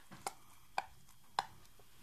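A Staffordshire bull terrier chewing a rope toy with a hard plastic piece, its teeth clicking sharply on the toy three times, a little over half a second apart.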